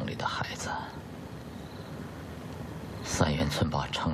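Speech in Mandarin: one spoken phrase ends just after the start, and a second begins about three seconds in, with a pause between.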